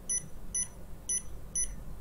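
Holtop Black Cool ERV touch-screen controller beeping at each press of its up button as the minutes are stepped up: four short, high beeps about half a second apart.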